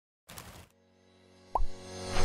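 Logo-intro sound effect: a short, quickly rising blip about one and a half seconds in, over intro music that swells in softly from near silence. A brief noisy swish sounds near the start.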